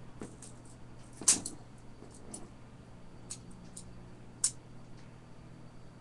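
A few light clicks and taps of small metal objects being handled, over a faint steady hum. The sharpest comes about a second in and another about four and a half seconds in, with softer ticks between.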